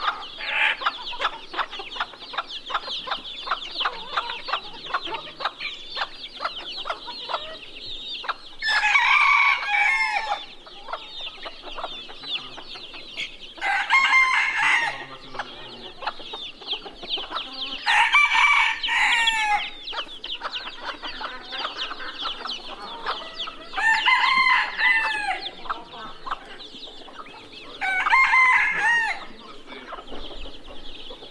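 Roosters crowing five times, each crow under two seconds, about every four to five seconds. Between the crows, chicks peep continuously and hens cluck.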